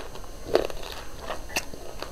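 Close-up chewing of a mouthful of food, with a few sharp wet crunches and mouth clicks.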